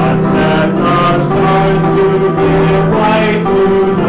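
A church congregation singing a hymn with instrumental accompaniment, in steady held notes.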